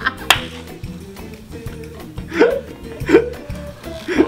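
Background music with a steady beat, one sharp snap about a third of a second in, and two short vocal sounds in the second half.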